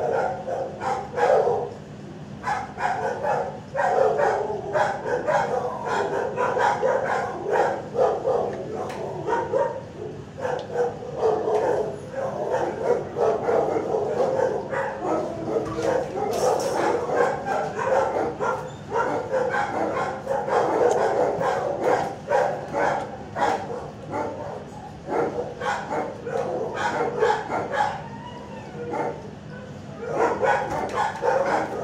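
Many shelter dogs barking and yipping continuously, the barks overlapping into a constant din, over a steady low hum.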